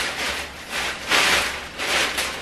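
A large plastic courier bag rustling and crinkling as hands dig into it and pull at the contents, loudest about a second in.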